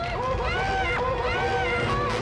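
Muffled, overlapping cries from two gagged people, their voices rising and falling in short panicked wails through the cloth in their mouths, over a low rumble.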